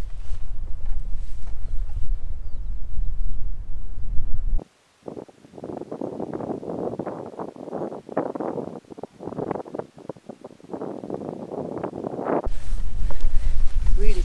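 Wind buffeting a camera microphone with a loud, low rumble. About four and a half seconds in it cuts abruptly to a much quieter stretch of fluttering, gusty noise, and the loud buffeting returns near the end.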